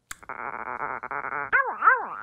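A dog's voice dubbed in as a muffled sound effect: a rough continuous sound for a little over a second, then about three short rising-and-falling whines.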